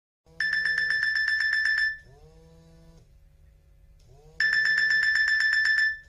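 An electronic ringing tone with a rapid trill, like an alarm clock or phone ring. It sounds twice, in bursts of about a second and a half each, with quieter tones in the gap between them.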